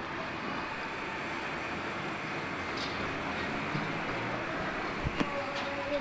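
Steady background hum and hiss, with a couple of light knocks about five seconds in.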